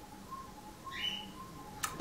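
Faint bird chirping over quiet room tone, with a single sharp click shortly before the end.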